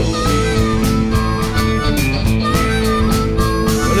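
Blues harmonica playing an instrumental fill between vocal lines, holding long notes over a band of guitars and drums.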